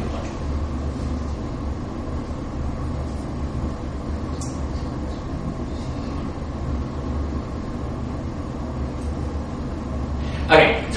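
Steady low hum with an even hiss over it, the background noise of a lecture room, with no speech.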